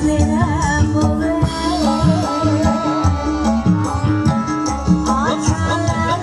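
Live Javanese jaranan music played loud: a singer's ornamented, wavering voice over steady repeated hand-drum strokes and sustained pitched instrument tones. The voice drops back in the middle and returns near the end.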